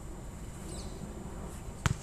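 A single sharp thud near the end, over a steady low rumble of background noise, with a faint short high chirp about a third of the way in.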